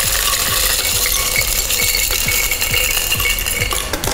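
Ice being poured from a metal cup into a glass blender jar over pineapple chunks: a steady rattling clatter of ice on glass and metal.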